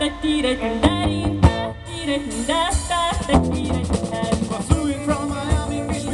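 Live rock band playing: drum kit and electric guitar under voices singing wordless 'da da' phrases.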